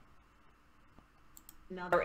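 Computer mouse clicking a video's play button: two quick, sharp clicks a little over a second in, after a near-quiet pause.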